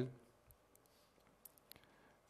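A pause in a speech: very quiet room tone with a handful of faint, sharp clicks between about half a second and just under two seconds in.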